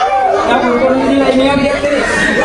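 Speech: several people's voices talking over one another in chatter.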